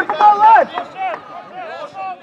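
Speech only: a voice shouting loudly for the first half-second or so, then fainter talking.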